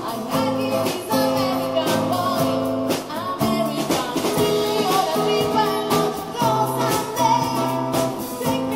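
A song by a small band: a woman singing the lead over acoustic guitar and drums.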